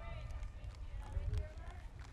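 A few knocks of footsteps on a raised outdoor stage, loudest a little past the middle, over a low rumble with faint voices in the background.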